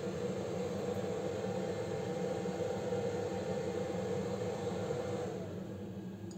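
A steady whirring hum, like a small fan running, that winds down and dies away about five seconds in.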